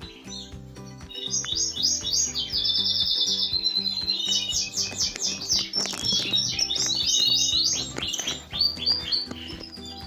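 Canaries singing: a stream of high chirps and rattling trills, with a fast, evenly repeated trill about two to three seconds in.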